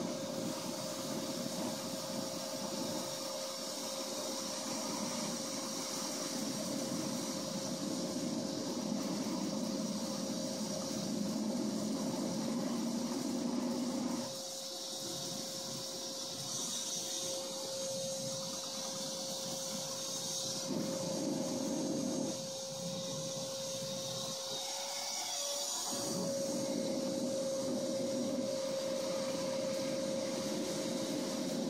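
A small shop vacuum with a hose blows air into the intake of a homemade jet engine, giving a steady motor whine under rushing air. The rush of air falls away for a few seconds around the middle and again near the end as the hose is moved off the intake, while the whine carries on.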